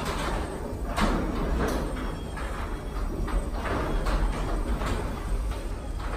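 Electric garage door opener running as the sectional garage door rolls down on its tracks to close: a steady motor hum with irregular rattling from the door panels.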